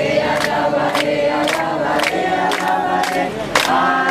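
A group of people singing together in chorus, clapping their hands along in a steady beat of about three claps a second.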